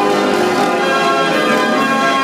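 A 65-key Bruder Elite Apollo band organ playing a tune, with many notes sounding together at a steady, loud level.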